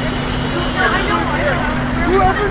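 Crowd chatter from many passers-by over city traffic noise, with a steady low hum.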